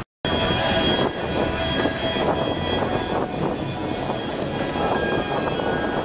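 Busy city street noise: a dense hubbub and rumble with steady high whines running through it, after a brief dropout at the very start.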